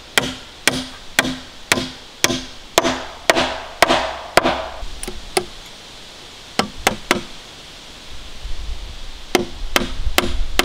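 Hammer striking nails into a wooden floor-frame board, steady blows about two a second. The blows stop for about a second halfway through, then come back as two short runs of a few strikes.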